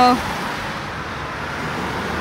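Cars driving past close by on a paved street: a steady rush of tyre and engine noise that grows a little louder as the next car comes through.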